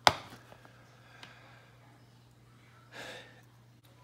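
Copper pennies being handled on a wooden table. One sharp click with a brief ring right at the start, as a coin is set down on a stack, then a few faint ticks of coins being picked up. A short breath comes about three seconds in.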